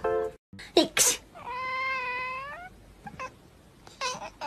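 A cat giving one long meow, a little over a second, with a slight rise in pitch at its end. It comes just after two sharp clicks about a second in.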